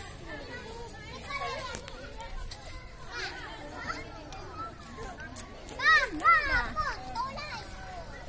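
Young children's voices playing and chattering, with two loud, high-pitched cries from a child about six seconds in.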